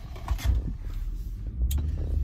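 Low, steady rumble of a car's engine and road noise heard from inside the cabin, with one short click about one and a half seconds in.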